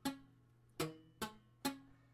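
Guitar strings under an A-chord shape plucked one at a time, four short notes that die away quickly: the fretting fingers are not pressing down hard enough, so the notes sound dull and don't ring.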